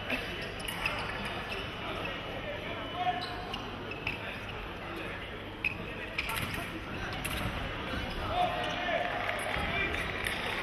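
Fencers' shoes thudding and stamping on the piste during foil footwork: a few sharp, irregular knocks over a steady murmur of voices in a large hall.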